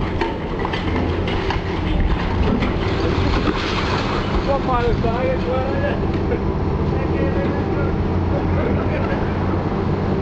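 High-reach demolition excavator with a hydraulic crusher pulling down a brick building: its diesel engine runs steadily under the crunching, clattering and knocking of breaking masonry and falling debris. A wavering squeal rises and falls around the middle.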